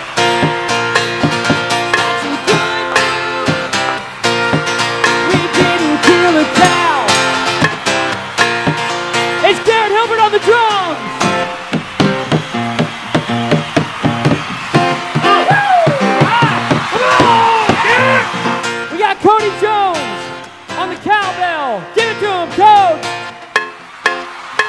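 A band playing an instrumental passage: acoustic guitar strumming with percussion. From about ten seconds in, a lead line of notes that bend up and down rides over the guitar.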